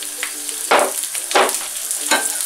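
Asparagus tips sizzling in hot olive oil in a frying pan, a steady hiss with two brief louder bursts near the middle.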